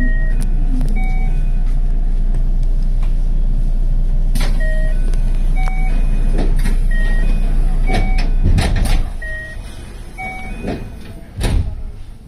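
Electric train standing at a station platform: a steady low equipment rumble that dies away about nine seconds in, with a run of short electronic beeps at changing pitches, like a chime melody, and a few knocks, the loudest near the end.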